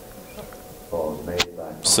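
Quiet room tone with a faint steady hum, then a short voiced sound about a second in and a sharp click just after. A man's commentary begins right at the end.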